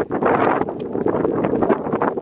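Wind buffeting the microphone: a loud, uneven rumbling gust noise.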